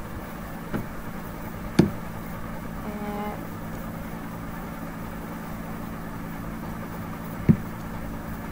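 A steady low hum with a few sharp computer-mouse clicks, the loudest about two seconds in and again near the end, while a script is scrolled on screen. A short hummed voice sound comes about three seconds in.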